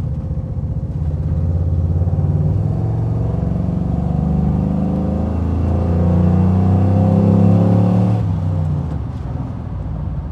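The 6.2-litre LS3 V8 of a 1960 Chevrolet Bel Air running as the car drives along. The engine note grows louder about a second in, shifts in pitch through the middle, and drops back about eight seconds in.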